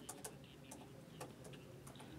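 Near silence: faint room tone with a few scattered faint ticks.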